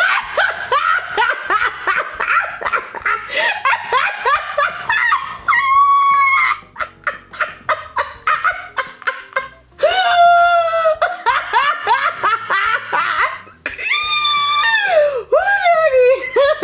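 A person laughing hard and at length in rapid bursts, breaking several times into long, high-pitched squealing cries.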